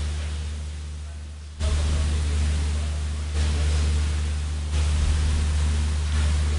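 Steady low electrical hum with broad hiss, the noise of a remote guest's audio line with nobody speaking. The noise dips for about a second and a half, then jumps back up abruptly.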